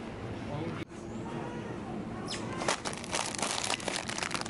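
Supermarket background murmur with faint voices. From about two and a half seconds in comes a rapid crinkling of plastic Samyang Buldak ramen packets being grabbed off the shelf.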